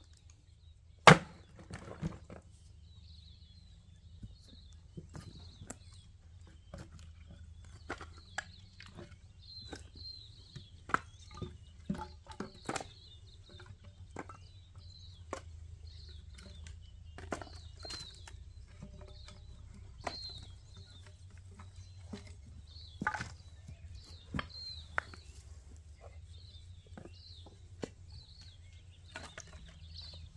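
An axe splitting firewood on a stump: one loud chop about a second in, then split pieces of wood knocking and clattering together as they are picked up by hand and stacked into an armload.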